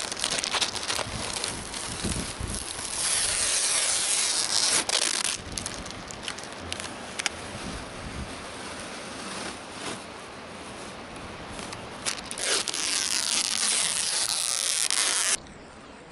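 Masking tape and plastic masking film being peeled off a painted metal truck body and crumpled: crackling, tearing and rustling, loudest for a couple of seconds from about the third second and again shortly before the end, where it breaks off suddenly.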